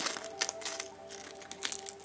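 Dry papery calyx husks of cape gooseberries crackling and tearing in a few sharp crackles as they are pulled off the green berries by hand. Faint background music with held notes plays underneath.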